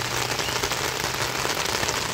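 Steady rain pattering: a dense, even patter of many small drops.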